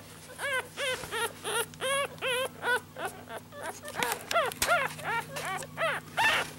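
One-week-old Yorkie poo puppy crying in a rapid series of short squeaks, about three a second, each rising and then falling in pitch.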